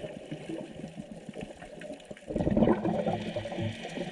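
Underwater gurgle of a scuba diver's exhaled bubbles from the regulator rushing past the camera, with a louder burst of bubbling about two and a half seconds in.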